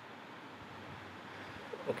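Faint, steady hiss of room tone and recording noise, with no distinct event.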